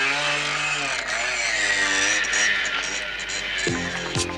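Motorcycle engine revving as the bike pulls away, its pitch rising and falling with the throttle. Music comes in near the end.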